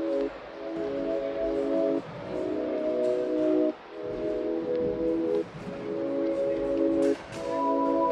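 Background music: sustained chords that change about every one and a half to two seconds.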